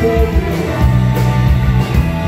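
Live rock band playing a song: electric and acoustic guitars over bass and a drum kit keeping a steady beat.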